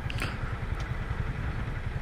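Honda Pop 110i's small single-cylinder four-stroke engine idling steadily with a fast low pulse, the motorcycle stopped at a light.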